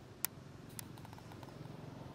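Faint outdoor background noise with a low rumble, broken by one sharp click about a quarter second in and a few lighter ticks just under a second later.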